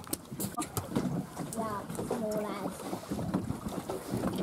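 Wind on the microphone and sea noise aboard a small fishing boat, with a few sharp clicks in the first second and indistinct voices talking in the middle.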